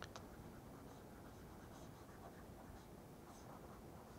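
Near silence with faint scratching and tapping of a stylus on a tablet screen, and a couple of small clicks at the very start.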